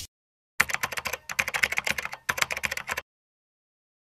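Keyboard-typing sound effect: a quick run of rapid clicks, starting about half a second in and stopping at about three seconds, with two brief breaks.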